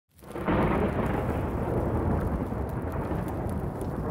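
A deep, thunder-like rumble that swells in over the first half second and then holds steady.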